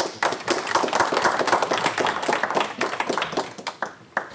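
Audience applauding at the end of a talk: a burst of hand clapping that starts right away, is fullest in the middle, and thins to a few scattered claps near the end.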